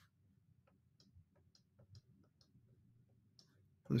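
Faint, light clicks of a pen tapping on a drawing surface, about a dozen at an uneven two or three a second, as a dashed line is drawn stroke by stroke.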